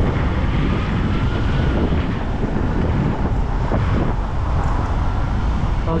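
Steady wind rush on a cyclist's action-camera microphone while riding, mixed with the sound of road traffic.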